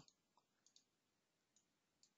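Near silence, with a few faint, short clicks of a computer mouse.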